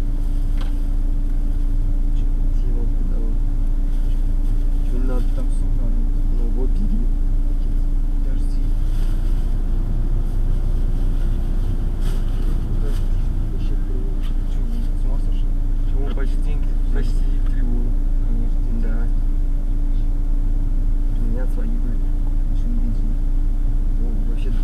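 Car engine idling, heard from inside the cabin: a steady low rumble with a constant hum that rises a little in pitch about nine seconds in and drops back about four seconds later.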